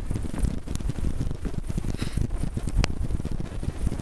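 Wind buffeting the camera microphone in a low, fluttering rumble, with a few light knocks.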